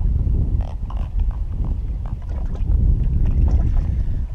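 Wind rumbling on the microphone, a steady low buffeting, with a few faint knocks in it.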